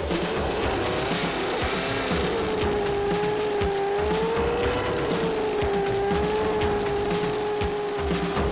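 Opening theme music: a steady beat under one long held note that wavers slowly up and down.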